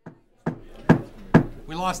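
Three sharp raps on the wooden dais, struck with a makeshift object in place of a lost gavel to call the meeting to order. A man's voice follows just after the last rap.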